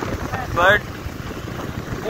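Wind rushing over the microphone and road noise from a moving motorcycle, broken by a short spoken word a little over half a second in.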